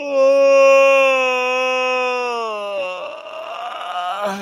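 A person yawning aloud: one long voiced yawn that holds nearly the same pitch for about two and a half seconds, sagging slightly, then breaks off into a breathy exhale.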